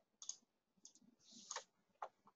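Three faint clicks of a computer mouse, spaced about half a second apart.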